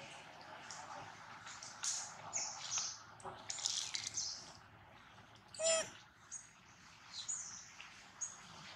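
Faint animal sounds: scattered short, high chirps, and one short pitched call, the loudest sound, a little before six seconds in.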